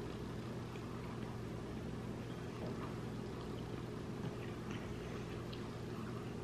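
Quiet chewing of soft mini muffins: a few faint small mouth clicks over a steady low hum.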